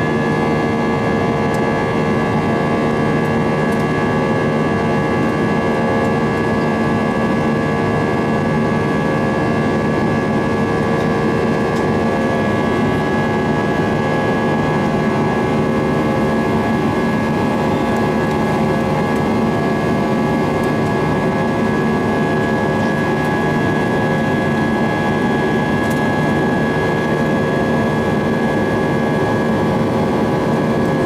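Steady in-cabin noise of an Airbus A320-232 in its climb, its IAE V2500 turbofans running at a constant setting: an even rush of engine and air noise with a steady high whine and lower hum over it.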